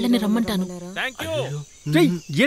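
Spoken dialogue, voices at a higher and a lower pitch in turn, over a steady high insect chirr like crickets.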